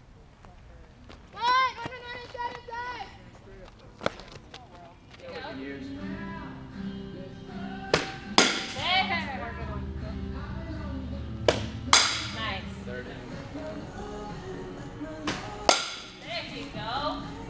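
Background music with singing comes in about a third of the way through. Over it, a softball bat cracks against the ball three times, each hit about four seconds apart, with a second sharp knock just after each one.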